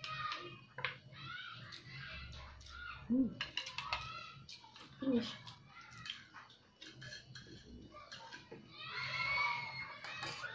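Utensils clicking against plates during a meal, under repeated high, wavering cries and a low steady hum; a short vocal "ooh" about three seconds in.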